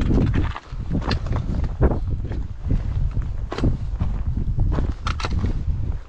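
Hiking footsteps crunching on a rocky dirt trail, at an irregular pace. A steady low rumble of wind buffets the microphone throughout.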